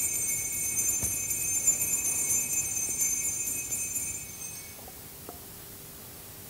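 Altar bells ringing at the priest's communion, a bright high jingling that lasts about four and a half seconds and then fades out. A small knock about a second in.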